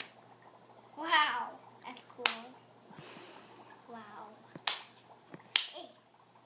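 A young child's high-pitched excited squeal about a second in and a shorter vocal sound around the middle, with several sharp clicks scattered through, over a faint steady hum.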